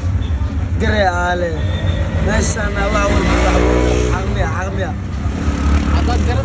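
A young man's voice talking in short, broken phrases over the steady low rumble of an auto-rickshaw's engine running at idle.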